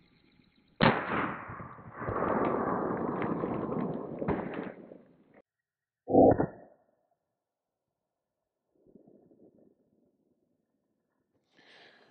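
Suppressed 9 mm Arex Delta pistol fired at a soft body-armor panel: a sharp shot about a second in, followed by several seconds of loud rushing noise, then a second, shorter and duller shot about six seconds in.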